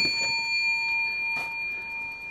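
A large silver coin ringing after being struck, a clear high bell-like ring that slowly fades, with a couple of light taps.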